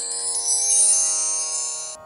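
A shimmering chime sting: many bell-like tones held together under a glittering high shimmer, swelling slightly and then cutting off abruptly at the end. It is a transition jingle between segments.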